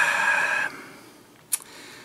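A man hissing a drawn-out breath through clenched teeth, which stops about two-thirds of a second in, then a single small click, likely from his mouth, about halfway through.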